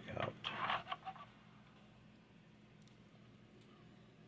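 Brief rustling and scraping handling noise for about the first second, then faint room tone with a couple of tiny ticks.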